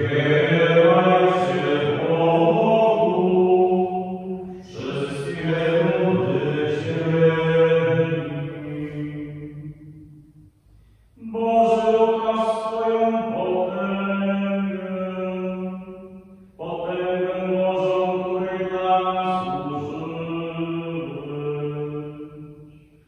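Unaccompanied male voice chanting a psalm in Polish liturgical chant: four phrases of about five seconds each, with long held notes and brief pauses between them.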